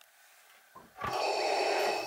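A breath drawn or pushed through a painter's respirator mask: a steady airy rush starting about a second in, just after a light knock.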